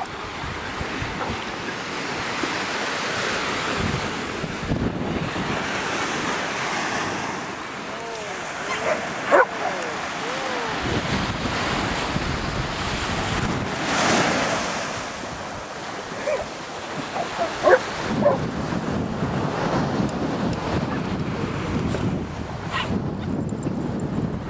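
Ocean surf washing steadily, with wind on the microphone; a dog barks a few times about nine seconds in and again a few times around seventeen to eighteen seconds.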